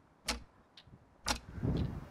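Countdown clock sound effect ticking for a quiz timer: a sharp tick about once a second, with a fainter tock between the ticks.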